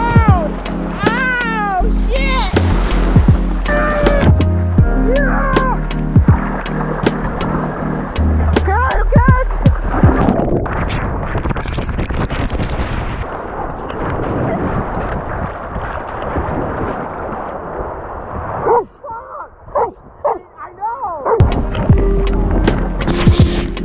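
Background music with a sung vocal over a beat and steady bass notes. A noisier, rushing stretch runs through the middle, and the level drops briefly near the end before the music comes back.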